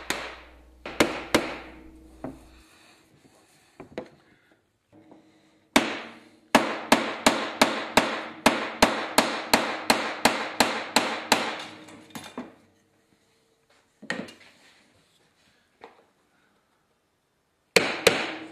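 Mallet blows on a wooden tool, hammering a copper sheet down into grooves cut in a wooden template, with the sheet ringing after each strike. Two blows come about a second in, then a steady run of about three blows a second for some six seconds, then a few scattered blows.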